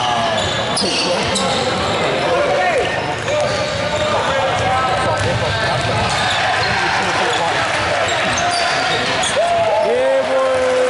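Basketball game play in a large gym: the ball bouncing on the hardwood floor and players' shoes squeaking in short, scattered squeaks as they move around the court.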